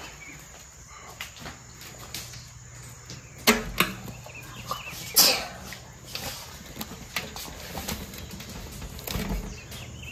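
Wet feathers being pulled by hand from a scalded chicken in an aluminium basin: soft rustling and tearing, with a few louder sharp sounds about a third and halfway through.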